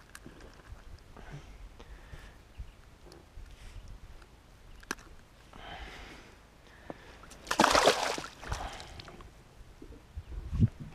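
A bass let go by hand at the lake surface, splashing as it kicks free about three quarters of the way in. Before that there is faint water lapping and a couple of small clicks.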